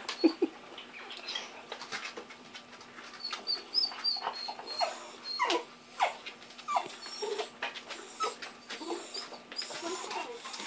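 Two small terriers playing, giving short whines and yips, with scattered clicks and taps from their claws on a tiled floor.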